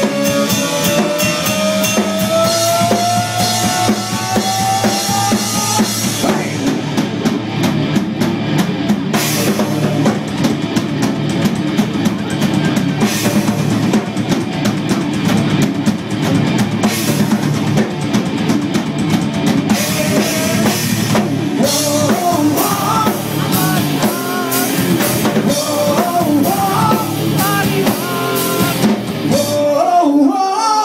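Hard rock band playing live and loud: distorted electric guitars, bass and a drum kit. A long held note slides slowly upward in pitch over the first several seconds, and a wavering lead line rides over the band in the second half.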